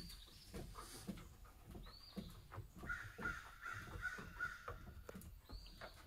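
Wild birds calling: a high, arching note repeated about every two seconds, and a quicker run of five or six lower notes in the middle. Light knocks and clicks are scattered throughout.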